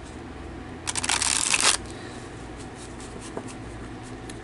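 A deck of tarot cards riffle-shuffled by hand: one quick, dense fluttering run of cards lasting under a second, about a second in. Faint light taps follow as the deck is squared.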